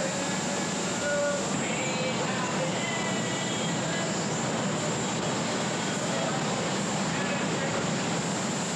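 Steady rushing noise of an automotive spray-paint booth: paint spray guns hissing and booth air moving without a break. Faint voices call out over it.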